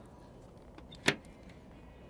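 A single sharp clack of the bow's anchor locker hatch lid being opened, about halfway through, over faint background noise.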